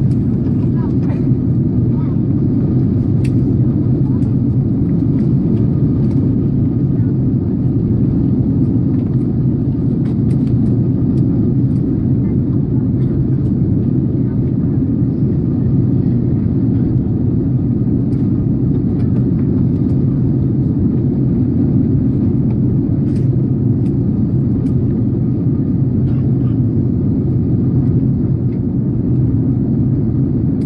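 Steady low rumble of a jet airliner's cabin on descent: engine and airflow noise at an even level, with a few faint clicks.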